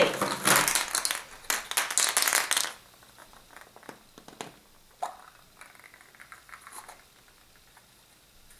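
Hollow plastic toy eggs clattering against each other and the plastic bowl as a hand rummages through them, a dense run of clicks for the first two and a half seconds. Then quieter clicks and a brief scrape as one plastic egg is handled and its two halves are worked apart.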